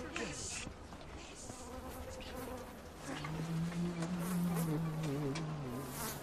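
A fly buzzing close by, starting about three seconds in, its drone steady but wavering in pitch as it moves around.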